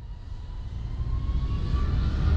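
Aircraft-style intro sound effect: a low rumble that swells steadily, with a faint rising whine above it.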